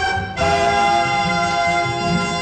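Orchestral film score music: after a brief drop, a sustained chord comes in about half a second in and is held steadily.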